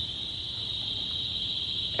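A tinnitus-simulation device playing a steady, unbroken high-pitched hiss, an imitation of the ringing or head noise that a tinnitus sufferer hears.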